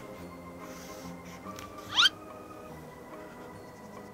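Soft background music, with one brief, high squeak that sweeps quickly upward about two seconds in.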